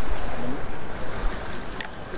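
Wind buffeting the microphone over the sea washing around the pier below, a steady rushing noise with low rumble. A single sharp click near the end.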